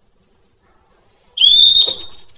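A small toy whistle blown once: a single high, steady blast about half a second long that begins past the middle. Its pitch jumps up at the start, then holds.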